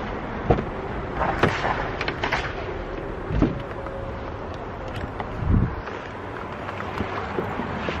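A few sharp clicks and knocks, then two heavier low thumps about three and a half and five and a half seconds in, over a steady low rumble and hiss.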